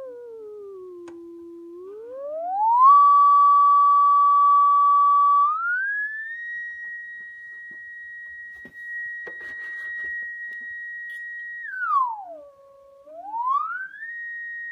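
Steady sine tone from a 1943 HP 200A vacuum-tube audio oscillator played through a small speaker, gliding in pitch as its frequency dial is turned. It dips, climbs to a loud held note, rises to a higher held note, then swoops down and back up near the end.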